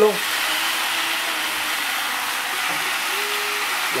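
Chicken breasts searing in butter in a very hot skillet, giving a steady, even sizzle.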